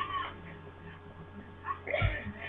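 A small animal's high cry with a bending pitch, heard once at the start and again near the end.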